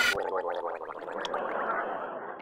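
Radio-drama sound effect: a dense swirl of sound cuts off right at the start, leaving a rapid run of short clicks that slowly thin out and fade.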